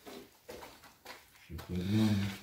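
A man's voice: a few short, faint, indistinct vocal sounds, then a louder, low, drawn-out vocal sound near the end.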